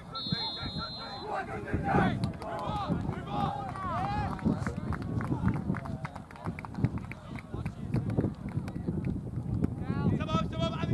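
Indistinct shouting from players and spectators across an outdoor soccer field, with many short knocks and thuds throughout.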